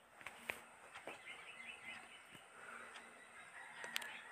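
Boiled potatoes being mashed by hand in a steel bowl, quietly: a few soft knocks of the hand against the bowl.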